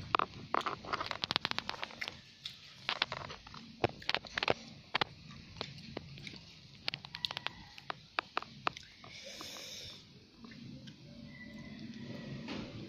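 Close-up eating sounds of spicy instant noodles: chewing with many quick wet mouth clicks in irregular clusters, and a short slurp about nine seconds in.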